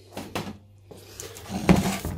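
A clothes iron being handled on a plywood board: two light knocks close together, then louder handling noise building near the end.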